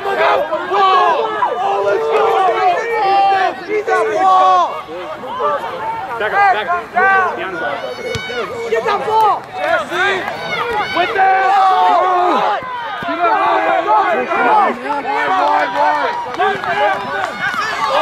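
Several voices shouting over one another without a break. These are rugby spectators and players yelling during open play.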